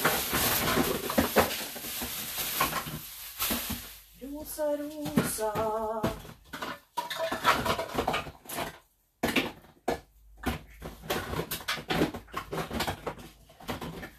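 Pots, lids and kitchen utensils clinking and knocking as they are handled, in irregular scattered strokes. A few seconds of rustling noise come first, and a short voice sound is heard in the middle.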